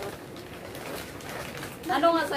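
Paper takeout bag rustling as a hand rummages inside it, with faint voices.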